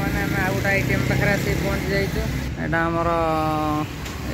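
Men talking beside a road over the steady low rumble of traffic and a running engine; near the end a steady held tone sounds for about a second.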